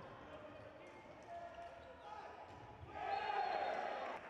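Handball game sounds in a sports hall: a ball bouncing and faint voices, then about three seconds in the spectators break into loud shouting as a shot is fired at the goal.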